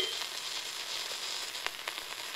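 Surface noise of a 1928 Brunswick 78 rpm shellac record under the stylus once the music has ended: a steady crackling hiss with a few sharp clicks. The band's final note cuts off right at the start.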